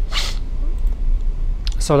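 A short hiss in the first instant, then a steady low hum under a pause in speech; a man's voice resumes near the end.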